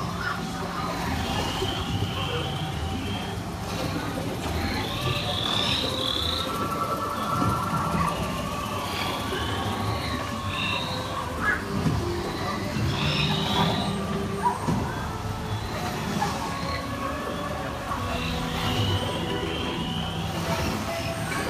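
Boat ride's ambient jungle soundtrack: short chirping creature calls recur every second or two over a steady low rumble.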